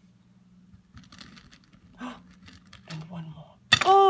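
A few soft clicks of licorice allsorts candy wheels being handled, then a tower of the candy wheels toppling onto the table with a short clatter near the end. A long, falling "Oh" from a voice follows at once.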